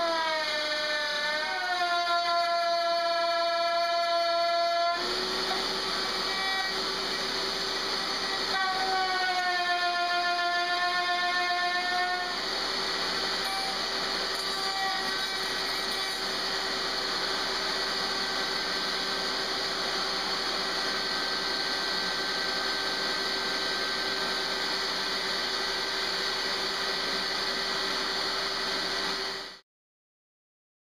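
Router with a straight carbide bit cutting the edge of an old clay-filled record while running under a dust-collection hose: a steady high motor whine with rushing air, its pitch wavering as the bit bites into the record early on and again about ten seconds in. The sound cuts off abruptly just before the end.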